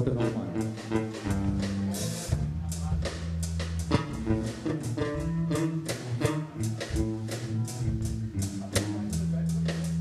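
Live blues band playing an instrumental passage: electric bass holding sustained low notes under drums with regular snare and cymbal hits, and electric guitar.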